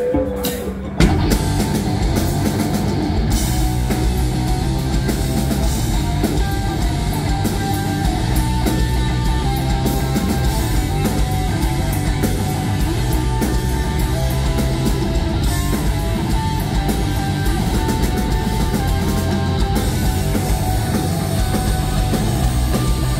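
Alternative rock band playing live: electric guitars, bass and drum kit come in together about a second in and carry on at full volume.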